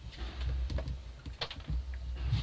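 Handling noise from a handheld camcorder on the move: a few scattered light clicks and knocks, one sharper than the rest near the middle, over a steady low hum.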